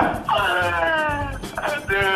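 A woman's long, high-pitched cry of laughter, sliding slightly down in pitch, over background music; a further exclaimed line starts near the end.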